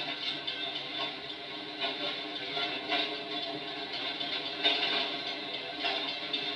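A train rolling through a railroad grade crossing, with irregular sharp clacks from the wheels on the rails about once a second over a steady hum.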